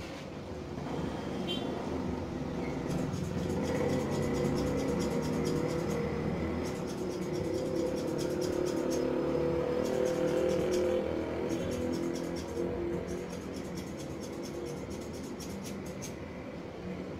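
Electric hair clipper buzzing close to the head during a short haircut. It grows louder from a couple of seconds in and eases off near the end. Music plays underneath.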